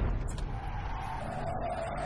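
Intro sound effect under an animated title: a steady noisy rush with a faint wavering tone in it.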